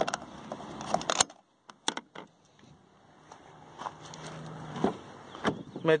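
Clicks and handling noises from the diesel filler cap and fuel door of a Volkswagen Amarok pickup, dropping to near silence about a second and a half in. This is followed by a faint steady background with a few light knocks.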